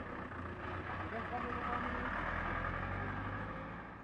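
Outdoor background noise with the steady low hum of a vehicle engine running and faint voices, fading out near the end.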